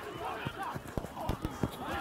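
Faint, distant shouts of rugby players calling across the pitch, over a string of irregular low thuds.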